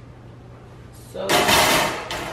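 Metal oven rack being set down onto another wire rack on a counter: a loud metal clatter and scrape starting about a second in and lasting under a second.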